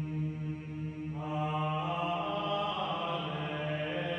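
Background music: chanting voices over a steady low drone, with higher voices joining in about a second in and holding long notes.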